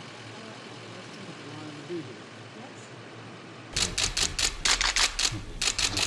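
Press cameras' shutters firing in rapid, overlapping clicks, about five a second, starting suddenly about two-thirds of the way in. Before that there is only a low background murmur of distant voices.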